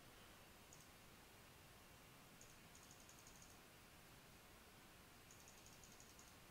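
Near silence with faint runs of quick clicks from a computer mouse: a short run about a second in, longer runs around the middle and near the end.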